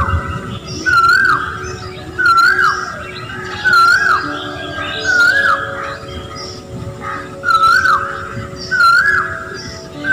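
A bird repeats a short clear whistled call about every second, each one a quick rise and fall in pitch, over background music with held notes.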